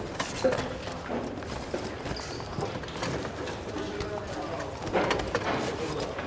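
Classroom bustle as a class breaks up: footsteps and chairs and desks knocking on a hard floor, with indistinct chatter from many students.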